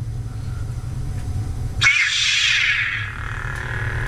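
A lightsaber soundboard's ignition sound played through its small speaker: about two seconds in, a sudden bright whoosh sweeps down in pitch and settles into a steady low hum. It is the Obsidian board's default sound font, played as the saber switch is pressed and the LED lights.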